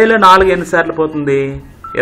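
Speech only: a man's voice saying numbers aloud in Telugu.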